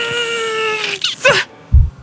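A man's long, high strained cry, held for about a second and sliding slightly down in pitch, as he strains to lift a heavy statue. A short second cry follows, then a heavy low thump near the end.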